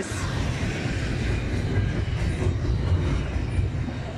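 Double-stack intermodal freight train's well cars rolling past, a steady low rumble of steel wheels on rail.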